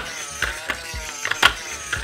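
Wired remote-control toy T-rex walking on a tabletop: its plastic gearbox and legs give irregular mechanical clicks and clacks, a few a second.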